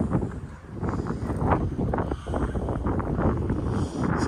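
Wind buffeting the camera microphone outdoors: a heavy low rumble that rises and falls in irregular gusts.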